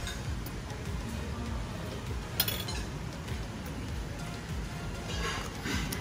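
Faint background music with a single sharp clink of cutlery against a plate about two and a half seconds in.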